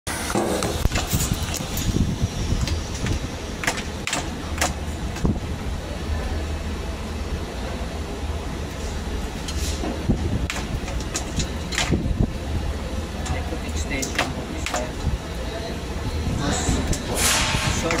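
Steady low machinery hum with scattered clicks and knocks of hand work on a metal machine, and a voice now and then.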